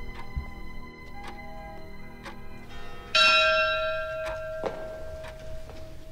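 A large bell struck once about halfway through, loud, its ringing tones fading slowly, over a sustained music chord with a soft tick roughly every three-quarters of a second.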